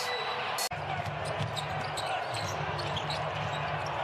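Basketball being dribbled on a hardwood court, scattered bounces and court noises over steady arena hum, with a brief dropout in the sound under a second in.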